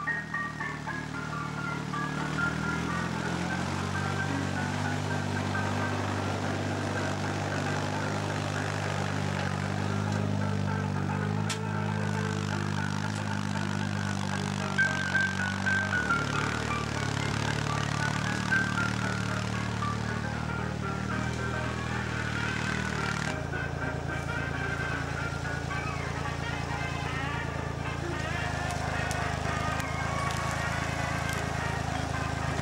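Background music over the steady running of a Raup trac RT55 tracked forestry winch machine's diesel engine; the engine sound changes abruptly twice, about halfway through and again about three-quarters of the way through.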